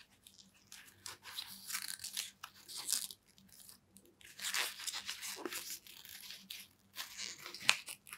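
Adidas Predator Accuracy goalkeeper gloves being bent and flexed by hand: the latex palm and the knit backhand, with its rubber grip studs, scuff and rustle in irregular bursts. A sharp click comes near the end.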